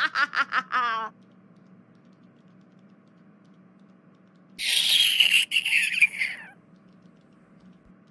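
A woman laughing in quick, rapid pulses, stopping about a second in. About four and a half seconds in comes a shrill, high-pitched cry lasting about two seconds and falling away at its end.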